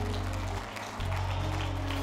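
Congregation clapping their hands, heard as scattered claps over soft background music of low, held keyboard notes that pause briefly near the middle.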